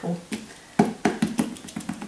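Small silicone candy molds filled with melted candy melt being tapped against a tabletop: a quick run of light knocks, about five a second, beginning about a third of a second in. The tapping is done to bring air bubbles up out of the candy.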